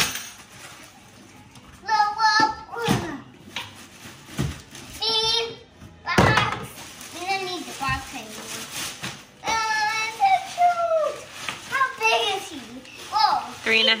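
A young child's voice making wordless vocal sounds and squeals in several phrases, with a brief rustle about six seconds in as the folded inflatable is handled.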